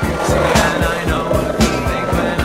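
Skateboard wheels rolling over textured paving tiles, with a band of rolling noise through the first second or so, mixed under music with a steady beat.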